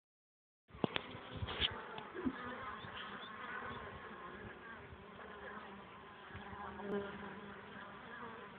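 Honeybees buzzing at a hive entrance, a steady hum of many wings with single bees' pitches rising and falling as they fly past: flight traffic at the entrance. The sound starts abruptly a moment in, with a few sharp clicks about a second in.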